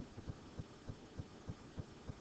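Faint, evenly spaced low thumps, about three a second, under a quiet background hum.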